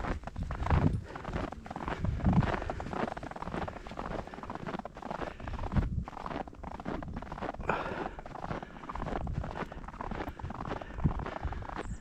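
Footsteps crunching through fresh snow at a walking pace, a steady run of repeated strides.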